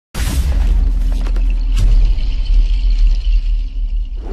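Electronic logo-intro sting: a sudden boom with a bright swish, then a deep steady rumble with a few glitchy clicks.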